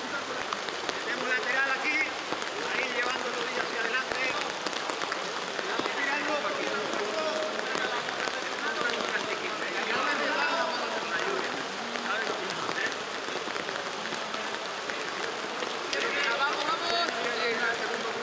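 Steady rain falling on an open football pitch, with players' voices calling out indistinctly now and then, loudest near the end.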